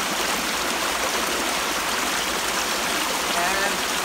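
Small creek running over stones, a steady rush of water.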